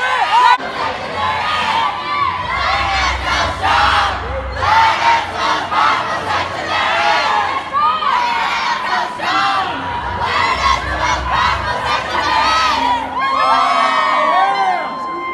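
A large group of teenage band members shouting and cheering together, loud and continuous, with many voices overlapping and rising to a peak near the end.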